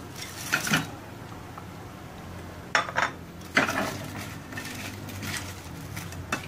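A metal spatula clinking and scraping against a non-stick frying pan as fried chicken wings are tipped into the sauce: a handful of separate knocks, the sharpest about three seconds in.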